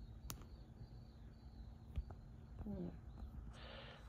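Quiet outdoor ambience with a faint steady hum, broken by a sharp click a quarter second in, a soft thump around two seconds and a brief faint voice-like murmur near three seconds.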